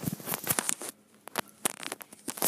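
Handling noise from fingers rubbing and tapping on the camera close to its microphone: a dense run of crackles and scrapes in the first second, then a few separate clicks.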